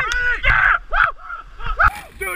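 Excited human yells and whoops in about five short bursts, each one rising and falling in pitch.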